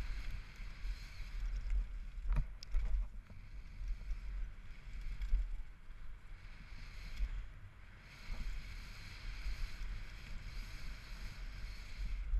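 Downhill mountain bike run on a gravel trail: wind buffeting the camera microphone as a low rumble, over tyres rolling and crunching on dirt and loose stones, with a few sharp knocks and rattles from the bike hitting bumps.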